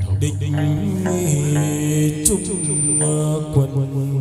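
Chầu văn ritual music: a voice chanting in long held notes that slide between pitches, over instrumental accompaniment, with one sharp percussive knock a little past halfway.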